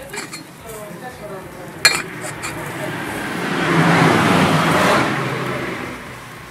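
A metal spatula clinks once against the charcoal grill's grate about two seconds in. Then a rushing noise swells over a couple of seconds and fades near the end, like a car passing.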